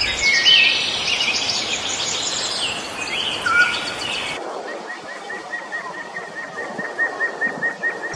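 Wild birds calling: a busy mix of chirps and whistles for about the first half. Then, after an abrupt change in background, a steady series of short, evenly spaced high notes, about three or four a second.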